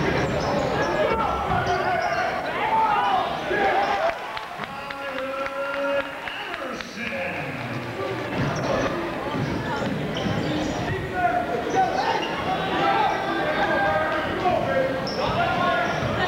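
A basketball dribbled and bouncing on a gym floor during a game, with players' and spectators' voices throughout.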